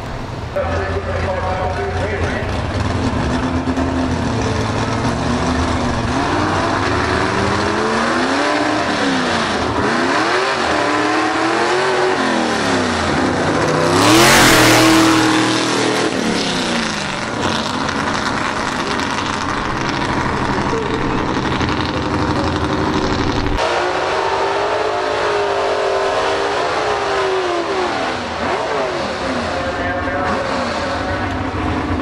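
Gasser drag cars racing down the strip at full throttle, their engine pitch climbing and dropping back again and again with the gear changes. A loud rush of noise peaks about halfway through.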